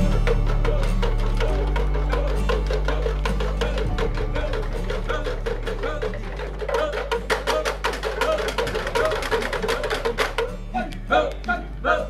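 A kecak chorus of many men's voices chanting fast, clipped, interlocking syllables over a background music bed of low sustained chords. Near the end the dense chant thins into separate, louder calls.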